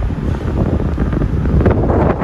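Loud wind buffeting the microphone: a steady, dense low rumbling rush with irregular gusts.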